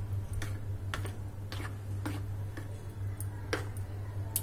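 Steel spoon clicking and scraping against a bowl while stirring curd into soaked rice, about two irregular taps a second, over a steady low hum.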